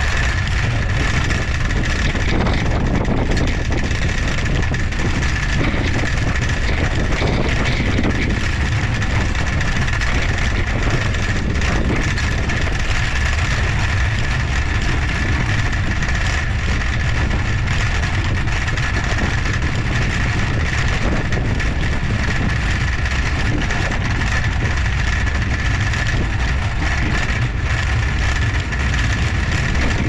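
Steady wind and rolling noise of a trike riding along a paved path, picked up by the camera's microphone: an even rush heaviest in the low end, with a thin steady high tone running through it.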